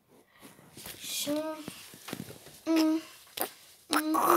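A child's voice making two short wordless sounds, hummed or sung syllables, about a second and a half apart, among a few sharp clicks.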